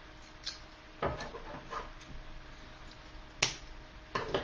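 Handling noises at a craft table while wire is fetched and cut: a few light clicks and knocks, a louder knock about a second in, and a sharp click shortly before the end.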